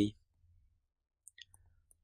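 A few faint, short clicks of a stylus tapping on a tablet screen while an equation is handwritten, in the second half, after the last syllable of a spoken word trails off at the start.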